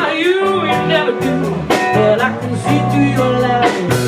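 Live blues band playing: electric guitars, drums and keyboard, with a woman singing over them.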